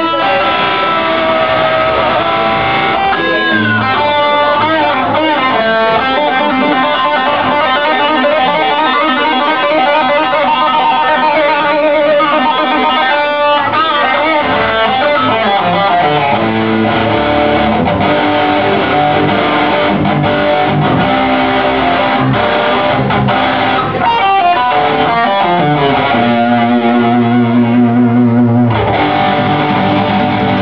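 Distorted electric guitar playing a lead solo in a live rock ballad, with fast runs and bent notes over the band's accompaniment.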